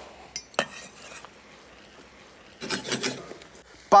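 Knife on a wooden chopping board while cutting shallot: one sharp knock about half a second in, then a short rustling scrape near three seconds in.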